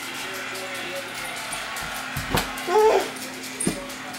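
A toddler's short vocal sound about three-quarters of the way in, with a soft thump just before it and another near the end.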